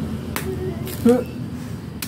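A single sharp chop about a third of a second in, a blade striking the husk of a young green coconut being opened.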